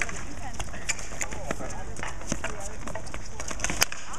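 Street hockey play: sticks tapping and clacking against a hard ball and the sport-court surface in a quick irregular run of sharp clicks, with one louder crack near the end.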